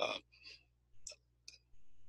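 A man's short spoken "uh", then a pause holding a few faint, sharp clicks about a second in and again half a second later, with a low hum near the end.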